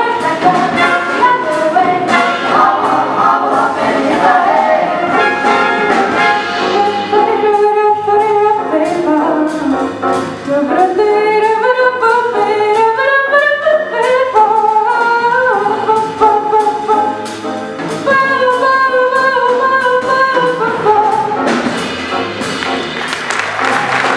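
Vocal jazz ensemble singing a swing tune in several-part harmony into microphones, backed by bass guitar and a steady beat.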